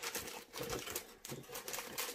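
Cardboard box and plastic wrappers rustling and crinkling as items are handled and pulled out, with irregular light taps.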